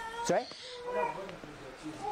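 Faint, low-level speech between louder phrases, with a short rising vocal sound about a third of a second in.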